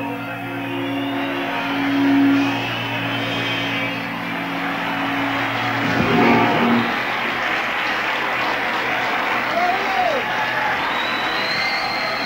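A rock band holds a sustained final chord that stops about six seconds in. A large stadium crowd then cheers and applauds, with a couple of whistles.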